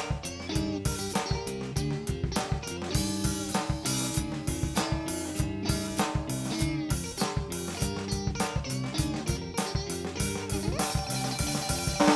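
Live electric blues band playing an instrumental passage: electric guitars over bass and drum kit with a steady beat. A note slides upward near the end.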